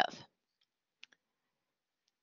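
The last syllable of a spoken word, then near silence broken by two faint, short clicks about a second in, one right after the other.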